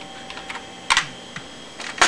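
A few separate keystrokes on a PC keyboard, about four clicks in two seconds, the loudest about a second in.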